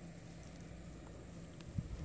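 Faint steady background hiss, with a few soft clicks near the end.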